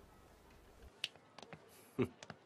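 Faint footsteps of hard-soled shoes on a floor: a few sharp, separate clicks starting about a second in, with the loudest near the end.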